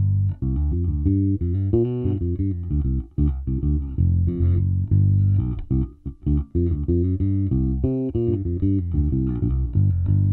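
Spector Legend Standard electric bass played through an amplifier: a run of short, low plucked notes, with brief breaks about three and six seconds in, ending on a note left ringing.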